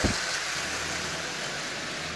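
Propeller-driven model rail car running on the layout: its small electric motor and propeller make a steady whirring noise with a faint low hum underneath, slowly fading a little as the car moves away.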